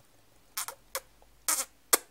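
Four short kissing smacks made with the mouth, about half a second apart.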